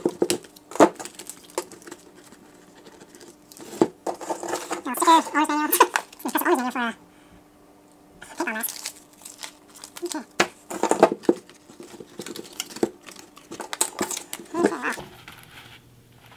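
Side cutters snipping the tags off a paintball mask, two sharp snips near the start, followed by irregular crinkling and rustling as the paper tags and the mask are handled.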